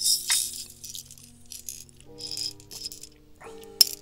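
Small tungsten beads rattling and clicking as they are handled, in short bursts, with one sharp click near the end.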